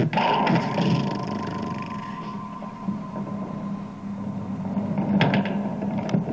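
Live experimental noise music through a PA: a held electronic drone with a steady high tone over a low hum, roughened by processed vocal noise, swelling again near the end with a few harsher noisy strokes.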